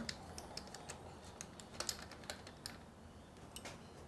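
Faint, irregular clicking of a ratchet wrench as the gearbox filler plug is unscrewed.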